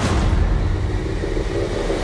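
Trailer sound-design swell: a loud, dense low rumble with hiss over it, thickening slightly as it builds.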